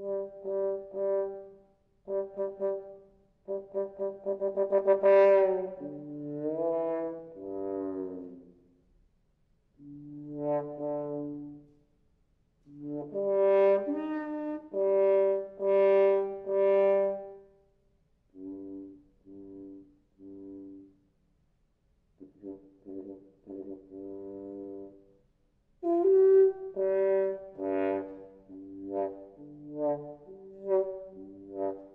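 Solo bass trombone, muted with a black mute held at the bell, playing phrases of short repeated notes and falling slides with brief pauses between them.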